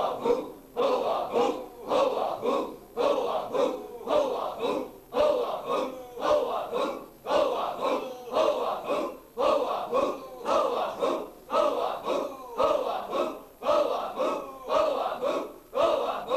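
A group of men chanting zikr in unison: one short devotional phrase repeated over and over, just under two times a second, each with a forceful, breathy attack.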